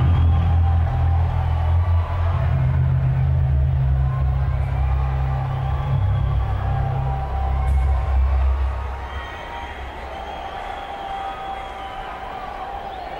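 Deep, sustained bass notes through a concert PA, changing pitch a few times, over an arena crowd cheering and whooping. The bass stops about nine seconds in, leaving the crowd noise.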